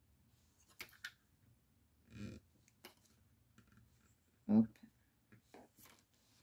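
A few light clicks and taps from small plastic craft clips being removed from a paper card as it is handled, with scattered fainter ticks afterwards.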